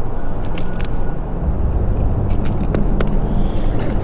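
Steady low rumble of wind on the microphone over water splashing at the river's edge, with a few faint clicks.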